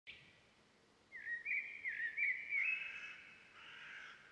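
A bird singing: a brief note at the start, then a run of short warbling, whistled phrases from about a second in, trailing off near the end.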